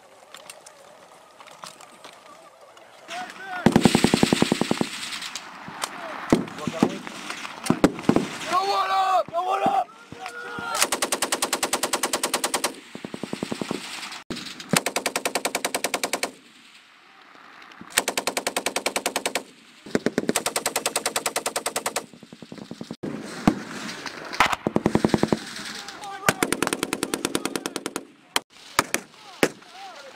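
Machine gun firing repeated bursts of automatic fire, each burst lasting about one to two seconds with short pauses between.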